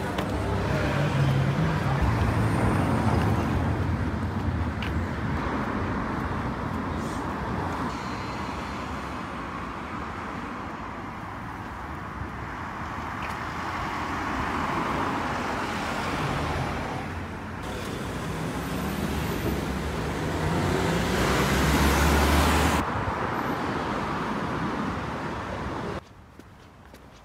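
Road traffic on a street: a steady wash of tyre and engine noise that swells several times as vehicles pass, the loudest pass near the end dropping away suddenly.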